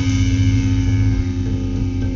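Loud, sustained distorted electric guitar and bass chord droning from a live rock band, held steady with no drum hits.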